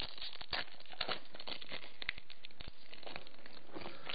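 Foil wrapper of a Pokémon Roaring Skies booster pack crinkling and tearing under the fingers as the pack is opened, a dense run of small crackles.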